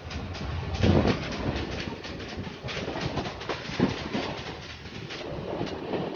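Electric multiple unit (EMU) suburban train running, heard from inside the coach: a steady rumble with irregular clatter and knocks of the wheels on the rails, the heaviest knock about a second in.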